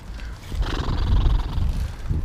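Electric dirt bike riding past close by, its motor and chain giving a raspy buzz for about a second and a half.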